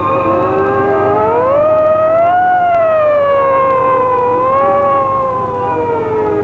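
A siren wailing with a slow, smooth pitch glide: it rises over the first two and a half seconds, then sinks gradually, with a small swell near the five-second mark.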